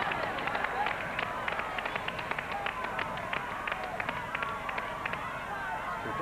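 Game-show prize wheel spinning, its pointer clicking rapidly against the pegs as it passes them, with studio voices calling out over it.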